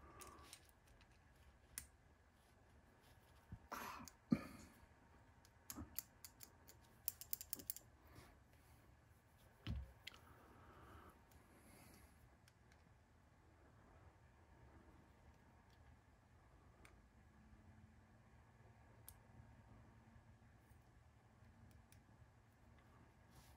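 Light clicks and taps of small RC steering parts and a hex driver being handled at a bench, scattered through the first half, with one low thump about ten seconds in; otherwise near silence.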